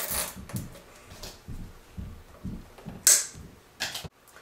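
Hands working a plastic cable tie around wires on a robot's rear handle: soft knocks and rustles, then a short, loud zip about three seconds in as the tie is pulled tight.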